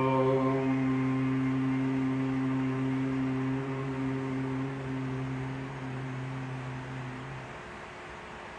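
A man chanting a long Om on one low, steady pitch. The open vowel closes into a hum within the first second, and the hum fades away about seven and a half seconds in.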